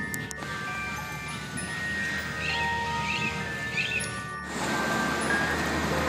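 Bell-like chiming tones ringing at several different pitches, overlapping, each note held about a second. About four and a half seconds in they stop abruptly and give way to the steady rumble and hiss of busy road traffic.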